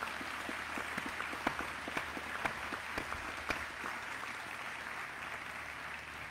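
Audience applauding, many hands clapping at once, slowly dying down toward the end.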